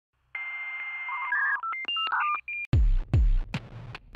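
An electronic intro sting. It opens with a steady telephone-like tone, then a quick run of dialing beeps at changing pitches, and after about two and a half seconds a beat of deep electronic kick drums with sharp clicks begins.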